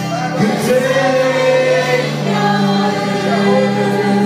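Gospel worship music: a group of voices singing long held notes over steady accompaniment.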